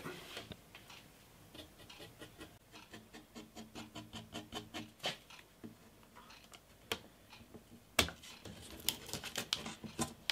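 Faint handling noise as a binding strip is pressed around the edge of a wooden guitar top: soft scrapes and small ticks, with a few sharper clicks about five, seven and eight seconds in. Near the end come busier small crackles as masking tape is stuck down over the binding.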